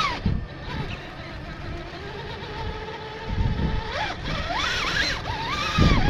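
Axial SCX-6 Honcho RC crawler's electric motor and geared drivetrain whining steadily as it crawls up rock, the pitch rising and dipping with throttle about four seconds in and again at the end, over a low rumble of the tyres working the rock.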